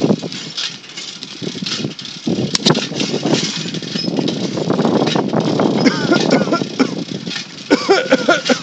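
Indistinct talking over the rumbling, clattering noise of a camera carried on a moving bicycle, with a few sharp clicks.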